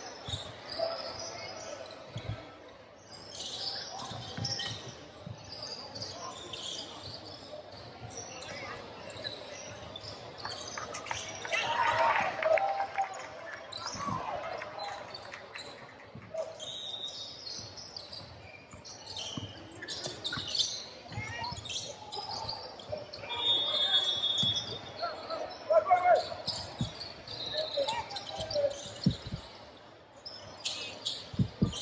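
A basketball being dribbled on a hardwood court, with repeated bounces, brief sneaker squeaks and players and spectators calling out, all echoing in a large gym.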